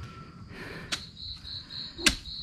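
A cricket chirping in even pulses, about four a second, starting just after a faint click about a second in; before that only quiet room tone.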